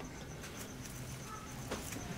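Quiet room tone: faint hiss with a faint, steady, high-pitched whine and a couple of faint ticks.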